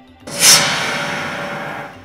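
News bulletin transition sound effect: a sudden whooshing hit about a third of a second in, which fades away over about a second and a half.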